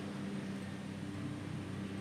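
A steady low hum from a motor or machine, a few constant low tones that hold unchanged, under faint outdoor background noise.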